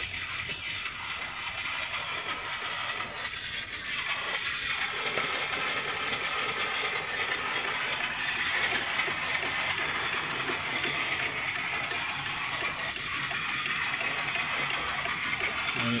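Steady hiss of venting steam from a small horizontal mill steam engine running on a vertical boiler.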